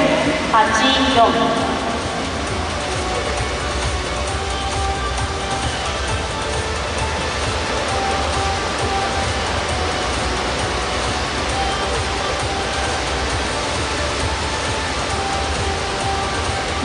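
Steady crowd noise of an indoor swimming arena during a race, with a low rumble underneath.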